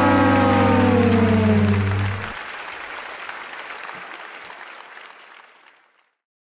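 Game-show sound effect marking that time is up: a pitched electronic tone that slides slowly down and stops about two seconds in, over applause that fades away to silence near the end.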